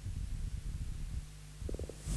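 Low, steady hum and rumble of studio room tone, with a few faint short clicks near the end.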